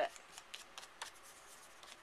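Small ink pad rubbed and dabbed along the edge of a paper flap to distress it: faint papery scuffing with a few light taps.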